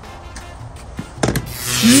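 Light background music, then about a second and a half in a sudden loud hissing zap with a rising yelp: a comic electric-shock effect from touching the Kisi door-access reader.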